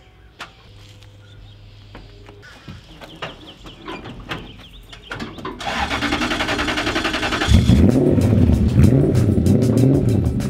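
Mazda B2200 pickup's engine starting about halfway through, then revving with rising and falling pitch as the truck pulls away. Music plays underneath.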